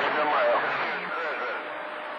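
CB radio receiving a distant voice on channel 28 by skip: speech that is hard to make out, buried in steady static hiss, thin and band-limited. It fades somewhat about a second in.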